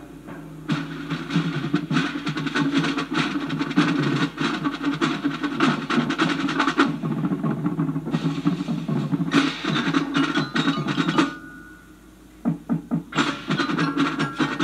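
Marching band drumline playing a fast percussion passage of rapid drum strokes, played back through a portable stereo's speakers. The drums drop away briefly about eleven seconds in, then sharp single hits start again.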